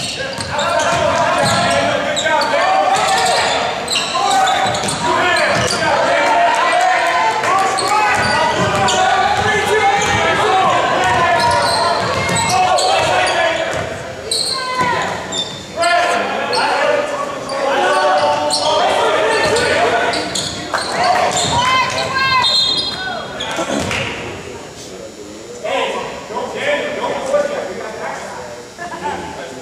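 Echoing gymnasium game sound: many overlapping voices of spectators and players calling out, with a basketball bouncing on the hardwood floor. The voices thin out somewhat near the end.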